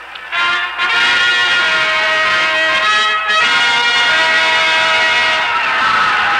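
Orchestral music cue led by brass, with trumpets prominent, playing held notes that begin about a third of a second in.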